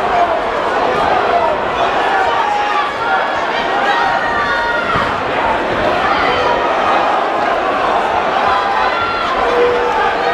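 Boxing spectators shouting and chattering, many voices overlapping at a steady level.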